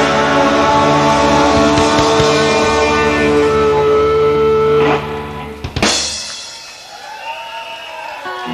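Rock band with electric guitars and drum kit playing live, holding a final chord that breaks off about five seconds in, then one last sharp hit and the sound ringing away: the end of a song.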